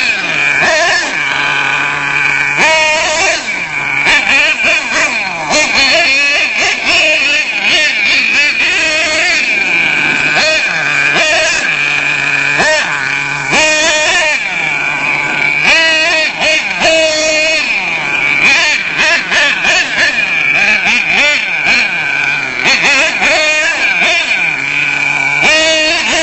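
HPI Savage 25 nitro RC truck's small two-stroke glow engine revving up and down over and over as the truck is driven, its pitch rising and falling every second or two.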